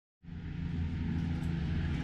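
Steady low outdoor rumble with a faint hiss, fading in just after the start.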